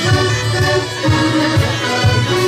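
Traditional folk tune played live on button accordions with a bagpipe over them, held melody notes over a regular pulsing bass.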